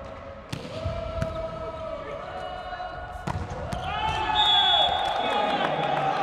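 A volleyball bouncing among the seats of the stands, a few sharp knocks about half a second, a second and three seconds in, over sustained crowd voices and shouting in the hall that grow louder after about four seconds.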